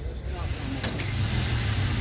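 Opel hatchback's 1.6-litre petrol engine idling with a steady low hum.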